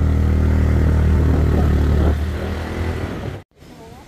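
Small scooter engine running at a steady pitch while riding, easing off and fading about two seconds in. The sound cuts off abruptly near the end.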